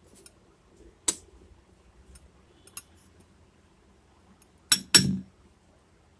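Metal spoon clinking against a glass bowl while spooning gram flour into it: a few light clinks, with the two loudest close together near the end, the second carrying a dull knock.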